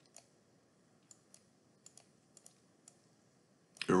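Faint, scattered clicks of a computer mouse, about eight in all, some coming in quick pairs.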